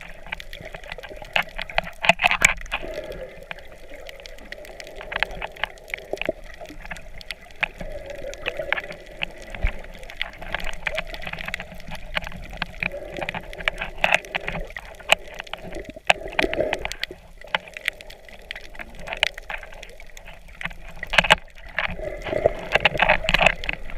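Underwater sound picked up by a submerged camera: water sloshing and gurgling, with many sharp clicks and crackles scattered throughout.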